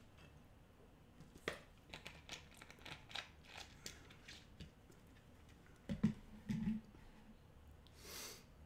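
Faint crinkling and clicking of a thin plastic drink bottle being handled for a few seconds after a drink. About six seconds in come a couple of dull knocks with a brief low hum.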